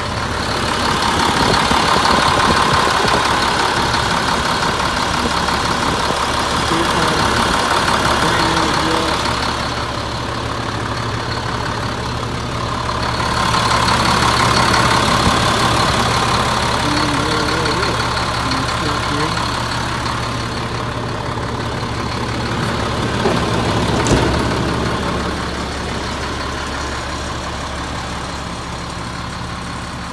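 The 2004 Ford F650 dump truck's engine idling steadily, its level swelling and easing a few times.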